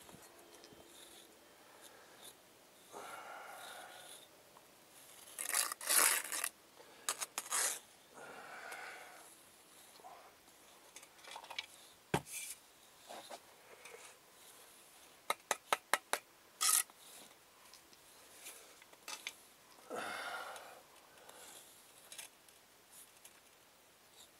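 Hand work on brickwork: intermittent scrapes and rubs of tools against brick and mortar, with a quick run of sharp taps a little past the middle.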